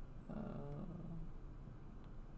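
A man's drawn-out, hesitant "uh" lasting under a second, over faint room hum.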